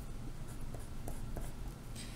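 A pen writing on paper in a few short strokes, over a steady low hum.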